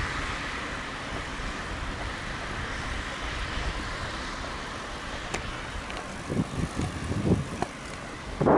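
Road traffic noise from cars on the adjacent road, loudest at first and fading away, then a few low thumps and knocks near the end.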